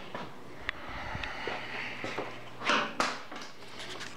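Faint, scattered metal clicks of an 8 mm Allen wrench being fitted to a motorcycle's rear brake caliper mounting bolts, with a short rushing scrape and then a sharp click near the end.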